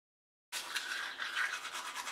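Manual toothbrush scrubbing teeth with quick, rasping back-and-forth strokes, starting abruptly about half a second in.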